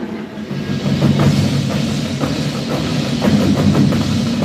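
Marching band playing: sustained low chords with drum and percussion hits over them.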